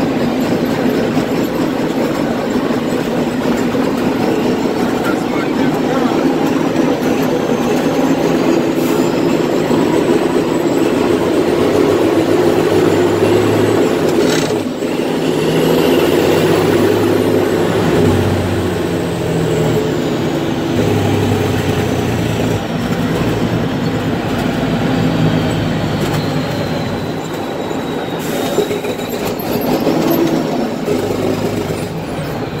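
Heavy truck running at highway speed, heard from inside the cab: a steady engine drone with road and tyre noise, the engine note shifting in pitch midway.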